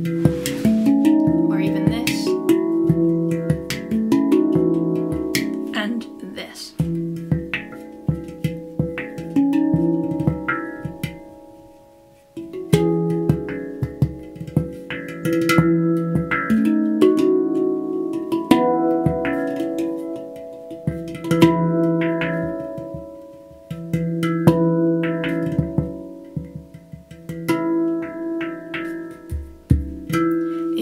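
Handpan played by hand: a rhythmic groove of ringing steel notes with sharp finger taps, in phrases of a few seconds that swell and die away, with a short lull about twelve seconds in. The groove is played with varied dynamics and added ornaments.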